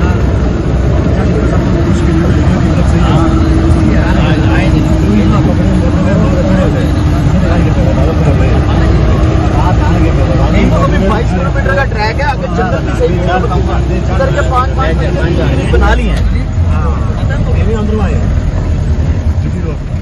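A 4×4 jeep's engine running under load as it climbs a steep, rough gravel mountain track, with a dense low rumble from the vehicle on the stones and a steady engine note that drops away about three-quarters of the way through. Voices talk indistinctly over the noise.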